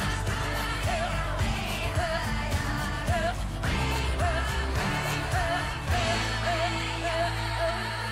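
News program opening theme music: a short sung vocal phrase repeats about once a second over a steady beat and bass. Around six seconds in, the beat drops out and a held bass note carries on under the singing.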